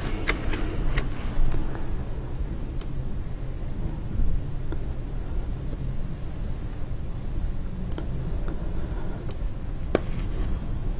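Steady low rumble of background noise with a few light clicks and knocks, from a plastic mixing bucket being handled and tipped as liquid casting plaster is poured.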